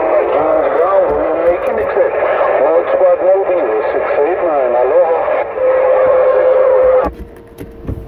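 A distant station's voice coming in over a Uniden Grant XL CB radio's speaker on channel 6 (27.025 MHz), thin and too garbled to make out. A steady tone sounds under it near the end, and the signal drops out about seven seconds in.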